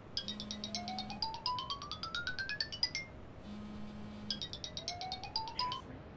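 Mobile phone ringing with an electronic ringtone: a fast string of bright beeps climbing steadily in pitch over a short low hum, heard twice. The second pass is cut short when the call is picked up.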